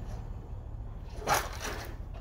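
Steady low rumble of outdoor background noise.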